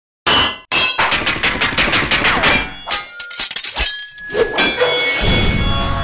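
Logo-reveal sound effects: a sudden burst of metallic clangs and sharp hits, then a fast cluster of strikes past the middle with ringing tones held after them. A low bass swell comes in about five seconds in.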